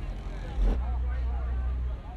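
Low, steady rumble of a car's engine as the car rolls slowly past, with one sudden low thump about two-thirds of a second in. People are talking in the background.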